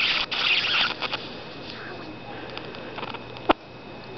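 High-voltage arc from a flyback transformer driven by a ZVS driver, hissing for about the first second and then stopping. A steady electrical hum and faint whine are left, with one sharp snap about three and a half seconds in.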